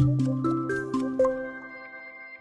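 Short outro music sting: a quick run of about six bright notes, roughly four a second, that then ring on together and fade away.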